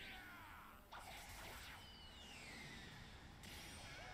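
Near silence, with a few faint gliding tones.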